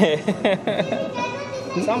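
Men laughing heartily, with some talk among the laughter.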